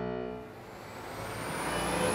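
Background music dying away as city street traffic noise fades in and grows louder, with a thin high tone rising slowly above it.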